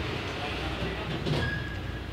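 OTIS traction elevator running, a steady low mechanical hum and rumble with a brief faint high tone near the end.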